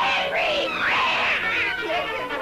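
Cartoon character vocal effects: a run of loud, arching yowls that rise and fall in pitch, about three in two seconds, over held notes of the orchestral score.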